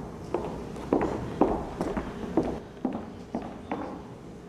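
Footsteps on a wooden stage floor: a person walking away at about two steps a second, eight steps or so, growing slightly fainter.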